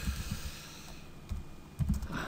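Computer keyboard typing: a handful of separate keystrokes with pauses between them, and a quicker run near the end.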